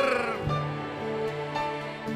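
Live worship-song music: a sung line trails off about half a second in, then steady held chords from the band fill the pause before the next line.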